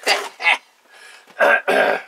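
A man laughing and coughing in short harsh bursts: two brief ones in the first half second, then a longer one near the end.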